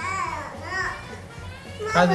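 A toddler whining: two short, high, arching cries in the first second. She is fussy and out of sorts, which the mother puts down to hunger.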